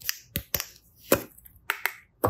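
Hard plastic capsule egg being picked up and handled over a glass plate: about half a dozen sharp, irregularly spaced clicks and taps of plastic.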